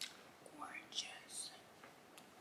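A woman whispering faintly: a few short, breathy syllables with soft hissing s-sounds.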